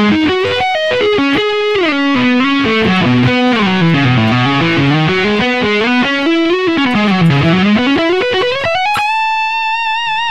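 Distorted electric guitar, a Charvel So-Cal through a Yamaha THR10X amp, playing fast sweep-picked arpeggio runs that cascade down and back up. About nine seconds in it lands on a high held note with vibrato.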